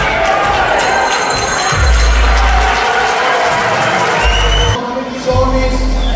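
Loud PA music with long, deep bass notes over a cheering, shouting crowd. The crowd's hiss falls away suddenly about five seconds in while the bass carries on.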